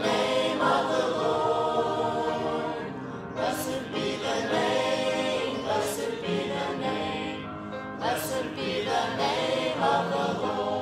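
A church congregation singing a hymn together, the group's voices carrying a sustained melody.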